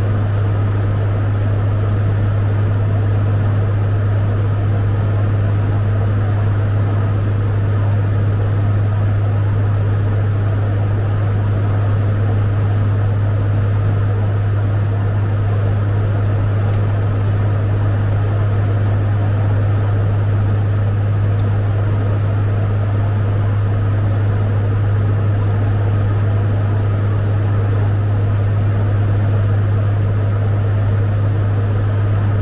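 Fokker 50 turboprop in cruise, heard on the flight deck: a loud, steady low propeller drone with an even rush of engine and airflow noise over it, unchanging throughout.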